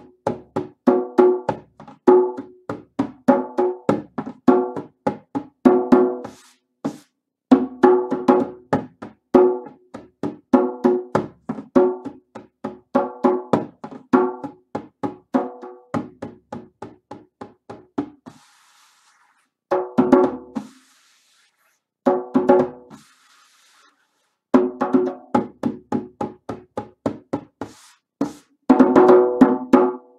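Djembe played with bare hands in an improvised, unhurried groove of repeated strokes. In the second half the phrases are broken by pauses of a second or two, and the playing ends with a quick flurry of strokes.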